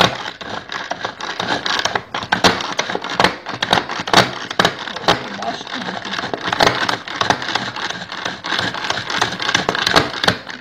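Tupperware Turbo Chef pull-cord chopper worked over and over: the cord pulled and retracting, its blades spinning with a dense clattering rattle and many sharp clicks as they shred boiled charque.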